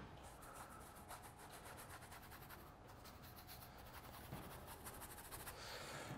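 Near silence, with a faint, scratchy rubbing of a paintbrush working acrylic paint.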